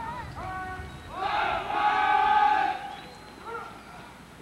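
Military drill commands shouted to a cadet formation: a couple of short calls, then one long, drawn-out command held for nearly two seconds, the loudest sound here, and a short call near the end.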